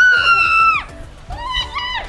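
A high-pitched scream held steady for about a second, then a second, shorter and wavering shriek near the end, over background music.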